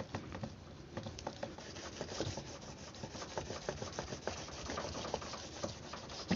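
A hard object rubbed back and forth over a plastic sheet on a wet photocopy laid on a copper PCB board: continuous scratchy rubbing with many small irregular clicks. This is the burnishing step that presses the photocopy's toner onto the copper.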